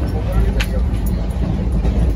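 Steady low rumble of a moving passenger train, heard from inside a sleeper coach, with faint voices and a single sharp click about half a second in.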